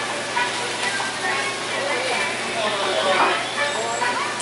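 Restaurant dining-room noise: indistinct voices talking over a steady low hum, with a voice more prominent about three seconds in.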